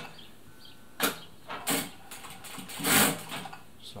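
Siruba DL7200 industrial needle-feed lockstitch machine sewing in short bursts, about a second in and again near three seconds, the second burst the loudest.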